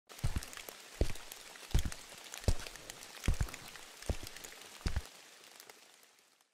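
Intro sound effect: a low, dull thump repeated about every three-quarters of a second, seven times, over a steady crackle. The thumps stop about five seconds in and the crackle fades away.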